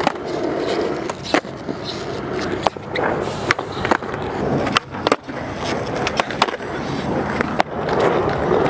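Skateboard wheels rolling on a concrete skatepark, broken by sharp tail pops, board clacks and landings as the skater does flip tricks and manuals.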